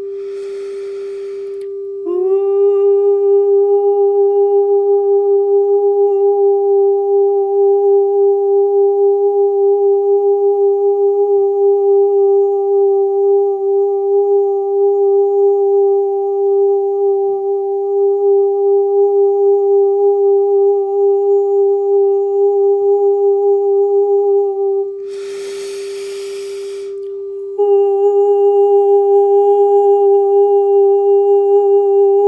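A steady 396 Hz pure sine tone, played from a YouTube video, with a woman's voice toning the same note in unison. She breathes in, holds the note for over twenty seconds, breathes in again, and takes the note up again near the end.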